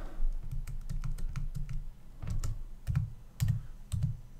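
Typing on a computer keyboard: a run of irregular keystroke clicks, with a few heavier key thumps in the second half.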